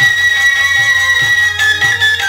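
Bengali kirtan instrumental music with no singing: a high melody note held for about a second and a half, then stepping down, over regular khol drum strokes.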